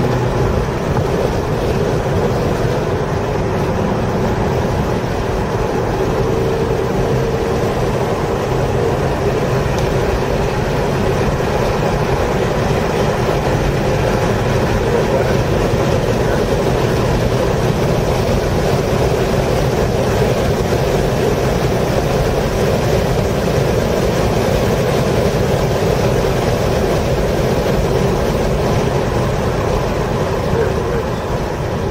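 A 2012 Audi A5's engine pulling at mid revs, heard inside the cabin over steady road and wind noise as the car laps a racetrack. Near the end the driver is on the brakes and the sound eases slightly.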